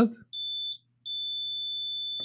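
A meter's continuity beeper sounds as the probes are held on a MOSFET: a short, high steady beep, then after a brief gap a long continuous beep. The MOSFET is shorted and reads zero ohms.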